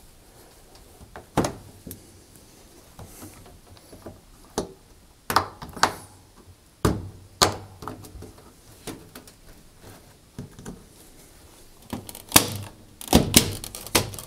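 Scattered clicks and light knocks as a spring-wire retaining band is worked around a washing machine's rubber door seal, metal against rubber and the front panel, with a run of louder knocks near the end.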